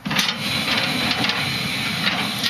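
Box truck's electric-hydraulic liftgate pump switching on abruptly and running steadily with a high whine as it lowers the loaded platform.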